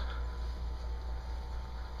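Faint steady low rumble with a light hiss of background noise; no distinct sound event.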